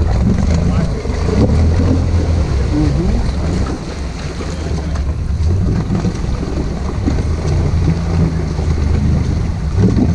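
Can-Am 570 ATV engine running steadily while the quad, sunk nearly to its racks, pushes through deep mud water.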